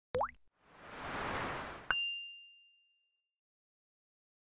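Logo-animation sound effect: a quick rising swoop, then a whoosh lasting about a second, then a sharp click with a high, clear ding that rings on and fades out over about a second and a half.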